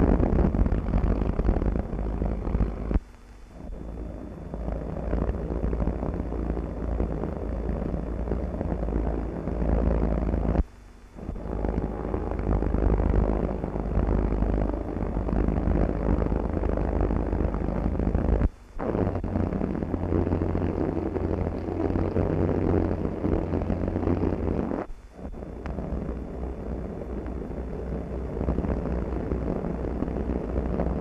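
Hughes H-4 Hercules flying boat's eight Pratt & Whitney R-4360 radial engines running as it moves on the water, a deep steady rumble and drone on an old film soundtrack. The sound cuts off briefly and resumes four times, about 3, 11, 19 and 25 seconds in, where film segments are joined.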